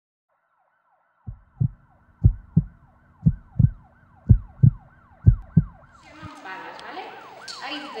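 Intro sound effect of a heartbeat, a low double thump about once a second, heard five times, over a repeating falling siren wail like an ambulance's. About six seconds in, the heartbeat stops and music comes in.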